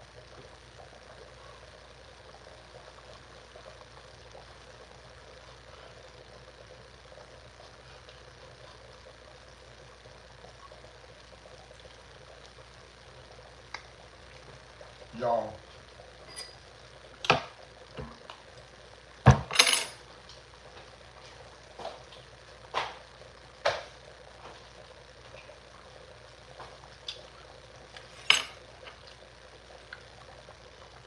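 Faint steady background hiss, then from about halfway a series of sharp, separate clinks of a metal fork and knife against a ceramic bowl, the loudest a little before the end.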